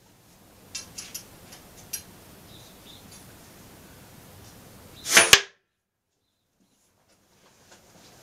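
A single shot from a homemade half-inch conduit blowgun: a sharp puff of breath about five seconds in, ending in a smack as the dart sticks into the plywood target. A few faint clicks come earlier.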